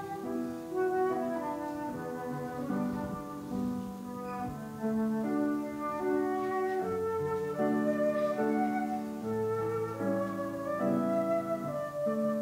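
Concert flute playing a melody of held and moving notes over a lower-pitched accompaniment.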